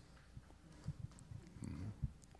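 A quiet pause: faint room tone with a few soft, short low knocks and a brief faint murmur in the second half.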